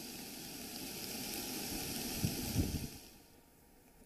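Water rushing out through the opened gates of the Bhadar-2 dam, a steady rush of noise that fades out about three seconds in. A couple of low thuds come just past the middle.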